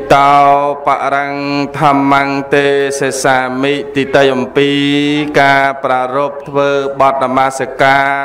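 A Buddhist monk chanting solo into a microphone in one male voice, with long held notes and melodic turns between them.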